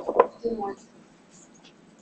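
Two sharp knocks about a quarter second apart, followed by a brief voice sound.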